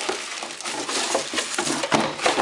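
Cardboard box and plastic packaging rustling and scraping in quick, irregular crackles as the subwoofer is pulled out of its shipping box.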